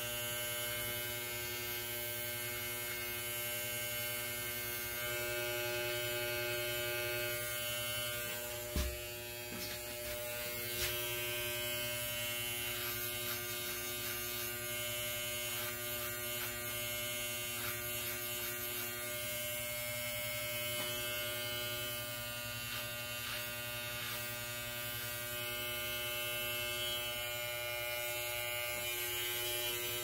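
Corded electric hair clipper running with a steady hum as it trims short hair, with one brief knock about nine seconds in.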